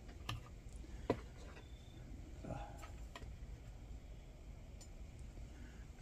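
Faint, scattered clicks and taps from the parts of a Sterno Inferno stove being handled, the pot unit and the red windscreen base, with the sharpest click about a second in.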